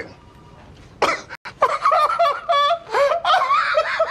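Several people laughing together in deliberately forced, exaggerated laughter, starting about a second in after a brief lull.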